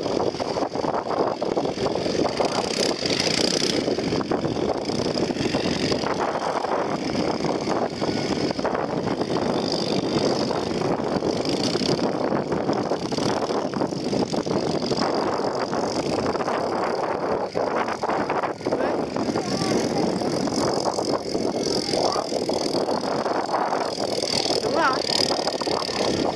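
A steady mix of people's voices and quad bike engines running.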